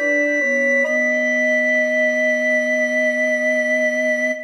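Soprano, tenor and bass recorders play the last few notes of a close-harmony trio and then hold a steady final chord from about a second in.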